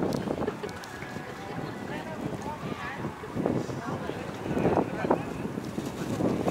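Wind buffeting the microphone in gusts, with people's voices talking in the background.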